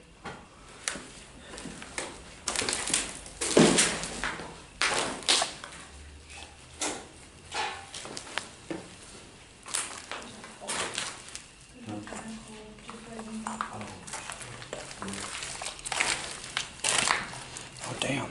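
Footsteps crunching irregularly over rubble and debris, with scattered crackling strokes.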